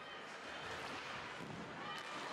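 Faint, steady ice hockey arena ambience during play: an even hiss with no distinct knocks or calls standing out.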